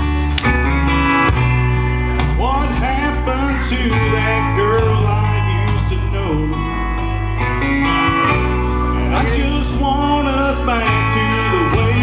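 A man singing a country-style song into a microphone over a karaoke backing track with guitar.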